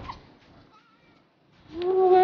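A woman's unaccompanied singing voice: a short high gliding vocal sound at the start, a quiet pause with a few faint sounds, then a long held sung note that starts loudly near the end.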